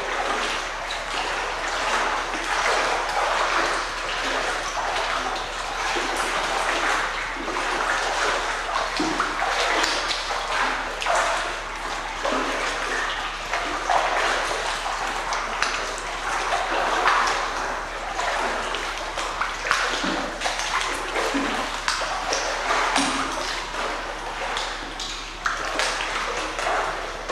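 Pool water splashing and churning in irregular surges as arms sweep back and forth through it at chest height.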